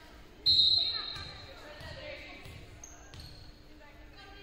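Referee's whistle: one short, sharp blast about half a second in, ringing on in the gym's echo. It is the signal for the next serve. A ball is bounced on the hardwood floor with dull thuds about twice a second.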